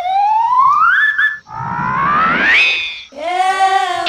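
Cartoon-style comedy sound effects: a whistle-like tone slides upward for about a second and a half and levels off, then a second upward glide with a rushing noise follows, and a wavering tone comes in near the end.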